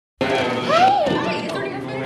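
Women talking to each other in conversation.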